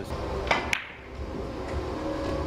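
Two sharp clicks of carom billiard balls striking, about a fifth of a second apart, over the low steady background noise of the hall.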